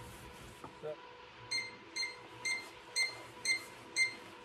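Smartphone level app beeping, short high beeps about twice a second starting about a second and a half in: the tone signals that the rifle the phone is resting on is level.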